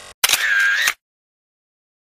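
A short editing sound effect at a cut, under a second long: a noisy burst with a steady whine running through it that cuts off suddenly into dead silence.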